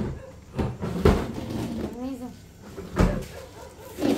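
A few dull knocks and bumps of household things being handled and moved about, the loudest about one second in and again near three seconds, with a brief faint voice in between.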